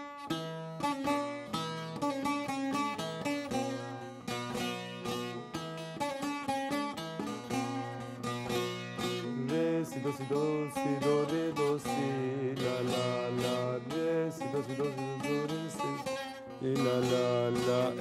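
Bağlama (Turkish long-necked saz) played solo, picked with a plectrum: a fast run of melody notes over the steady ring of the open drone strings, growing louder near the end.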